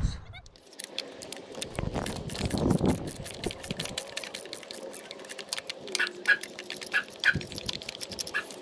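Light clicks and rattles of hand work on parts on top of a stopped V6 engine, such as spark plug wire boots and the coil. A few short animal calls sound in the background in the last two seconds.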